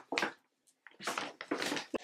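Paper gift bags rustling and crinkling as they are handled and pulled out of a larger paper bag: a short rustle just at the start, a half-second of silence, then a run of rustles through the second half.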